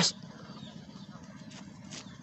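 Faint scraping and rustling of a hand brushing loose sand aside to uncover a plastic toy lizard.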